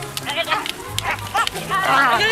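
Several young people yelling short rising-and-falling cries during a staged stick fight, with a few sharp knocks, over background music; the yelling thickens into overlapping shouts near the end.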